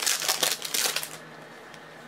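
Foil trading-card pack wrapper and cards being handled: about a second of dense crinkling and rustling, then quieter with a few light clicks as the cards are sorted.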